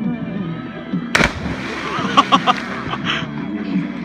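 A person jumping from a tall tree into a river and hitting the water with a single loud splash about a second in. Short shouts from voices follow.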